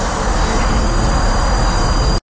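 Poisonous gas hissing loudly and steadily into a sealed room, with a heavy low rumble underneath.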